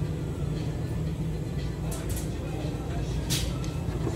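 A steady low hum of a shop interior with faint background voices. A few short sharp clicks come about two seconds in and again just after three seconds.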